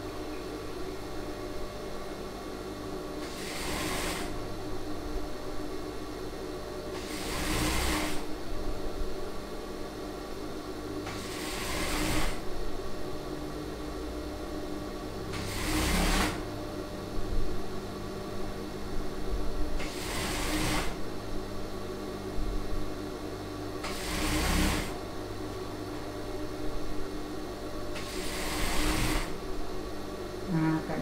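Industrial single-needle lockstitch sewing machine sewing a seam in short runs: about a second of stitching roughly every four seconds, seven runs in all, with the motor's steady hum in between.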